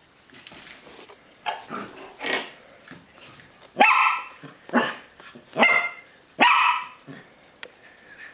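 Dog barking: a few softer barks, then four loud barks about a second apart.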